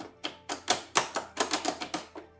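Piano-key cassette transport buttons on a 1972 Sanyo portable stereo music center being pressed and released over and over. They make a rapid, irregular run of about a dozen sharp mechanical clacks.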